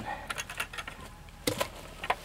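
Plastic bucket lid being handled: a run of light scattered clicks, then a single knock about one and a half seconds in as it is set down.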